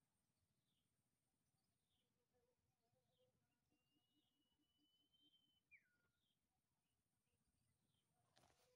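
Near silence, with faint bird chirps about once a second and one longer whistle that drops in pitch past the middle.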